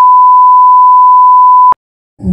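A loud, steady electronic beep: a single pure tone at about 1 kHz, held with no change in pitch, that cuts off sharply with a click shortly before the end.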